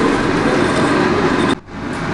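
Steady, loud rushing background noise with no clear rhythm or tone, cutting off suddenly about one and a half seconds in.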